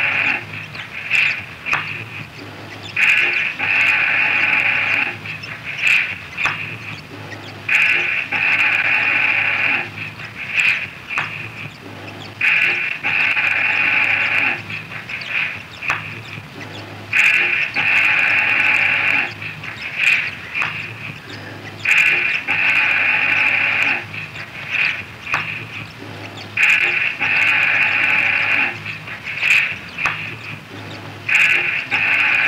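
Experimental noise music: a loud, buzzy pitched sound about two seconds long repeats as a loop roughly every five seconds, with scattered sharp clicks in between.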